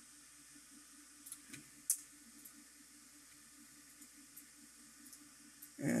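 Quiet room tone with a few small clicks, the sharpest about two seconds in, from a computer mouse operating Google Earth's historical imagery. A man's voice starts right at the end.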